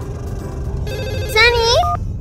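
A phone ringtone sounding briefly about a second in, followed by a short child's voice, over a continuous low rumble.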